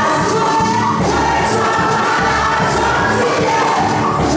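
Many voices singing a gospel praise song together over amplified band accompaniment with a steady bass beat.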